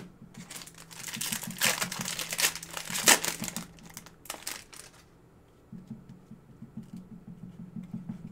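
Foil wrapper of a 2018 Panini Prizm football card pack crinkling as it is opened, in a run of crackling rustles over the first five seconds, loudest about three seconds in.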